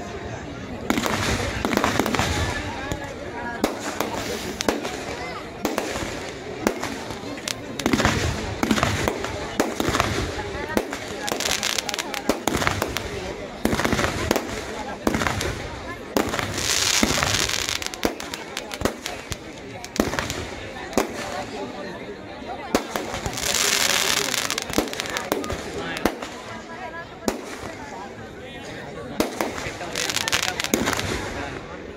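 Aerial fireworks going off in quick succession: a continuous run of sharp bangs and crackles, with two longer bursts of hissing crackle in the second half.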